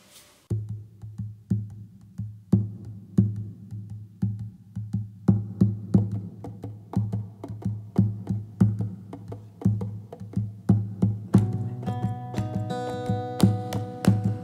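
Takamine steel-string acoustic guitar playing an instrumental song intro: a steady rhythm of low plucked notes with sharp, knock-like attacks. A few seconds before the end, higher sustained notes join in.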